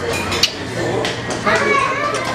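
Several people talking over one another, with a young child's voice among them.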